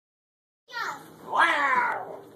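A young child's voice making wordless cries: a short high call, then a longer, louder one that falls in pitch.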